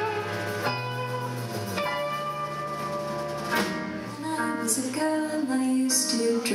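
Live music with piano and other instruments holding chords, and a woman's voice coming in to sing about four seconds in.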